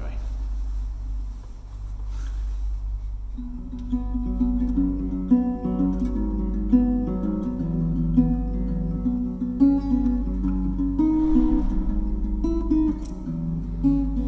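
Acoustic guitar playing an instrumental intro, its notes coming in about three seconds in, in a room with vaulted ceilings. A steady low hum lies underneath.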